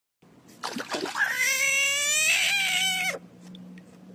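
A frog's distress scream as it is grabbed by hand: one long, high cry of about two seconds that drops to a lower pitch near its end, like a small child screaming.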